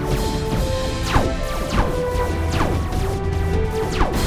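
Sci-fi laser blaster shots: several quick zaps, each falling sharply in pitch, fired in rapid succession over a dramatic music score.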